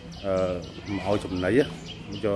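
Speech only: a man talking, with a faint steady low hum underneath.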